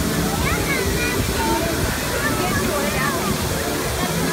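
Steady rush of a wall of fountain jets falling into a shallow pool, with indistinct voices of people in and around it.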